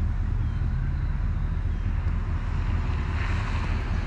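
Off-road vehicle engine running steadily at low revs, with a broad hiss of noise swelling near the end.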